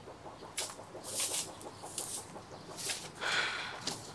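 Chickens clucking faintly a few times, in short separate bursts.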